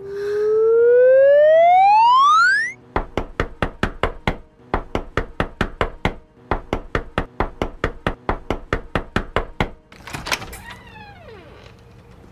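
A loud rising tone, then knuckles rapping on a wooden front door in a long run of quick knocks, about four a second, in three bursts with short breaks. A short falling pitched sound comes near the end.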